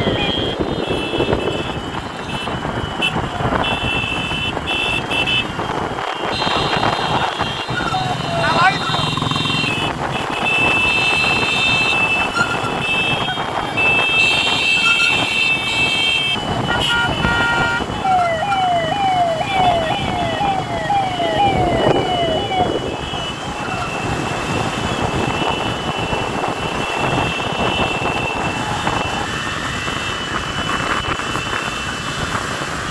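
Road and wind noise from vehicles moving at speed in a police-escorted convoy. A siren sounds in quick falling sweeps, about two or three a second, near the start and again a little past halfway, with steady high horn-like tones coming and going.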